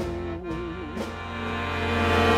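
Live band music: hyper-accordion chords with light drum and cymbal hits. A held, wavering note ends about a second in, and then the accordion chords swell louder.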